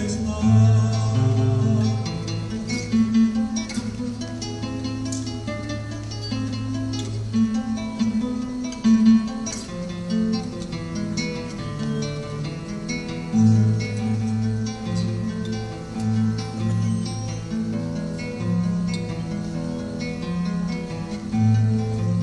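Solo acoustic guitar playing an instrumental passage with no singing: a plucked melody over deep bass notes that ring on beneath it.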